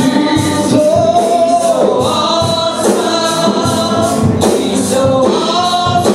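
Live gospel worship music: singers on microphones lead the song with held, sliding notes over instrumental accompaniment with a steady beat.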